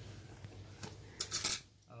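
A few sharp clicks and light taps of a red plastic box cutter being picked up off a tiled floor, the loudest about a second and a half in.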